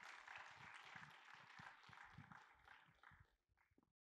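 Near silence: a faint, even hiss that dies away near the end.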